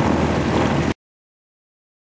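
Sailboat's freshly rebuilt inboard diesel engine running steadily under way, with wind on the microphone. It cuts off suddenly about a second in, leaving silence.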